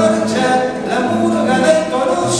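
A man singing while playing an acoustic guitar.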